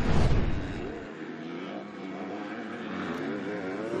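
A loud whoosh with a deep rumble in the first second, the broadcast's transition effect, then 250cc four-stroke MX2 motocross bike engines revving up and down as the bikes race through a corner.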